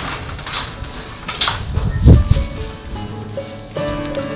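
A cow lows once, a short low call about two seconds in. Acoustic guitar background music comes in soon after and runs on.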